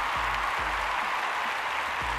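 Large audience applauding steadily, with music playing underneath.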